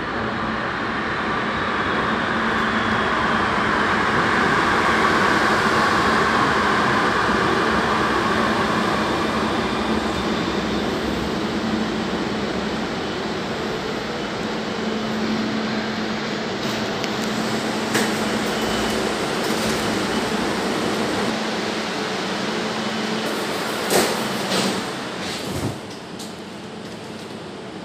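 Barcelona Metro Line 10 automatic train running into an underground station and braking to a stop: its noise swells over the first few seconds with a faint falling whine, then dies away by about ten seconds. A steady hum follows, broken by a brief sharp clack in the middle and louder clacks near the end.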